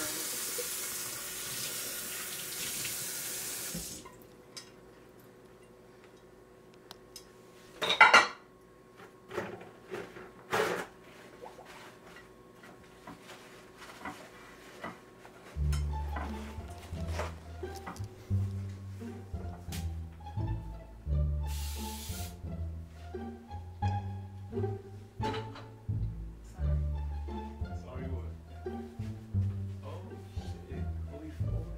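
Kitchen tap running into a stainless steel sink for about four seconds, then shut off. A loud clatter about eight seconds in, with a few lighter knocks after it. Background music with a steady beat and bass line comes in about halfway and plays on.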